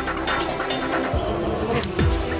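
A small multirotor drone buzzing steadily from its propellers as it flies past, with electronic music underneath.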